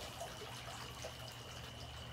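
Two-tier garden fountain quietly trickling and splashing as water spills from its bowls. A thin, steady high-pitched tone runs underneath.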